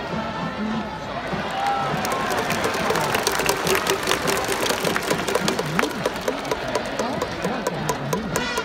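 A large crowd of baseball fans singing a player's cheering song in unison, with trumpets playing along. From about three seconds in, fast regular sharp beats keep time under the singing.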